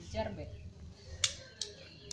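A handheld office stapler driving a staple through folded young coconut leaf (janur), heard as one sharp click a little after a second in, followed by a softer click.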